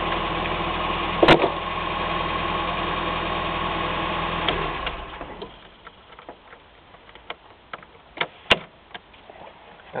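1985 Nissan pickup truck's engine idling steadily, with a sharp click about a second in, then shutting off about five seconds in. After that, faint scattered clicks of a metal jiggler key working in the ignition lock.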